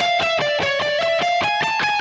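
Kiesel DC700 electric guitar, tuned a whole step down and played through a Kemper profiler, playing a slow single-note alternate-picked line: each note is picked and held briefly, the pitch stepping up and down high on the neck.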